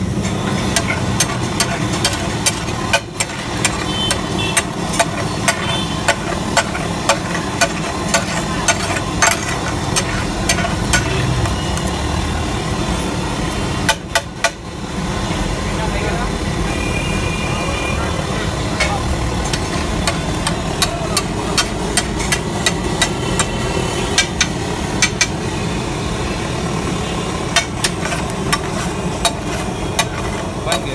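Flat metal spatula scraping and tapping on a large flat griddle (tawa) as a thick layer of pav bhaji is spread and worked, with sharp clicks every second or so over a steady bed of street noise.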